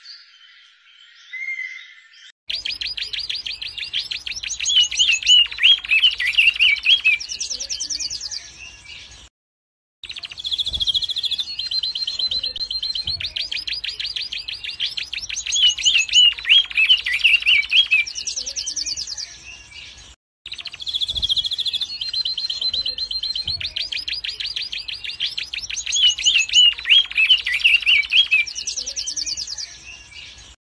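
Red-naped ibis calling: rapid series of high, quick notes, some bending up and down in pitch. The same burst of calls comes three times, each lasting several seconds, with short silences between.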